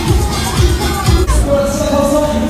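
Loud fairground ride music played over a ride's sound system, with a heavy bass.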